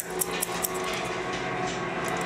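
Barber's shears snipping through afro hair: several quick snips in the first half-second or so, then the cutting stops over a steady low hum.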